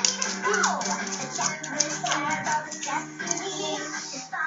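Music from a children's cartoon playing through a television set: held melody notes over a steady light percussive beat.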